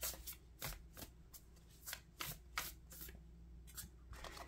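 A deck of large oracle cards being shuffled by hand: faint, irregular flicks and slaps of card against card.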